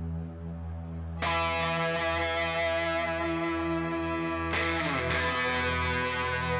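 Live rock band playing a slow instrumental passage: a held ambient chord over a steady bass, then about a second in a loud, distorted electric guitar chord comes in and rings on. Near the end a note slides down in pitch.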